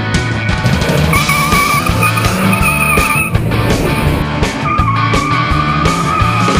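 Tyres of a classic Mini squealing through slalom turns: a wavering squeal from about a second in for two seconds, then again near the end, over background music with a steady beat.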